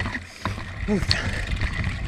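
Mountain bike rolling downhill over a forest trail strewn with pine needles and leaves: a steady low rumble with quick rattles and jolts.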